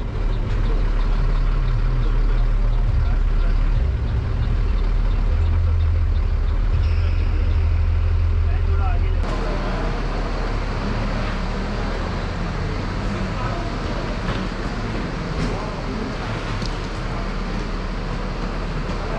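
Coach bus engine rumbling low and steady as heard inside the moving bus. About halfway through it cuts off abruptly into outdoor kerbside noise with distant traffic and indistinct voices.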